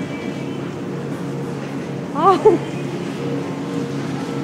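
Shopping cart rolling along a supermarket floor, a steady rumble over a constant low hum. A woman says "Ah" briefly about two seconds in.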